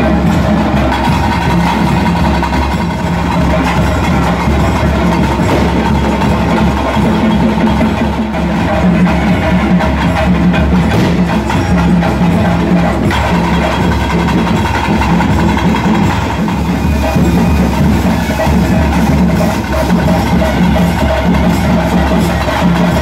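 Loud live ritual music: dense, rapid drumming and percussion with steady held tones sounding over it throughout.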